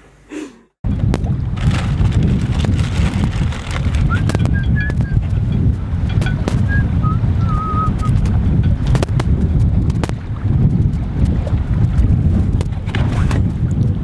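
Wind buffeting the microphone, a loud uneven low rumble, with occasional light clicks and knocks.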